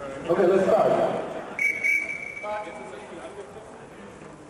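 A man's voice calls out loudly, then a referee's whistle gives one short steady blast about a second and a half in, signalling the start of play; more voices follow.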